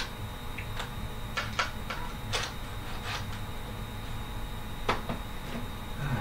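A scatter of light wooden knocks and clicks, about eight in six seconds, from boards and a cordless drill being handled while a small wooden box is fitted together. The clearest knocks come about two and a half seconds in and near the end.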